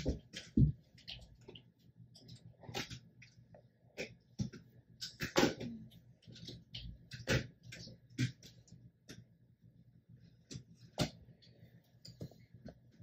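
Tombow Fudenosuke hard-tip brush pen writing on journal paper: a scatter of short, irregular scratches and soft taps as each letter stroke is drawn and the tip lifts and touches down.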